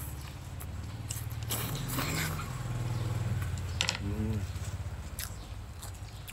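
A person eating, with chewing and biting noises and small clicks of the mouth. There is a louder burst of rustle about a second and a half in, and a brief voiced 'mm' about four seconds in.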